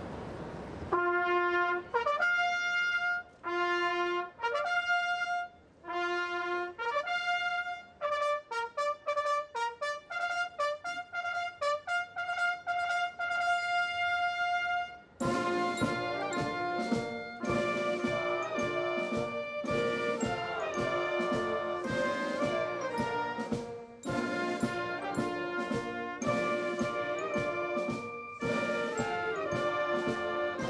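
Alpini military brass band: a trumpet call of short, separate held notes, quickening into rapid repeated notes, then the full band of trumpets, saxophones and drum comes in about halfway through and plays on.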